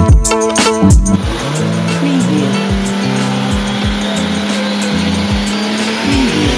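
Background music with a steady beat. About a second in, a steady screech of car tyres squealing in a drift joins it and runs on under the music.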